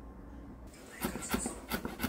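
Kitchen knife rapidly mincing red and green chili peppers on a wooden cutting board. A fast run of chops starts about a second in, roughly five a second, after a quiet start with a faint hum.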